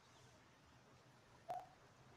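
Near silence: faint outdoor background, broken by a single short, sharp click about one and a half seconds in.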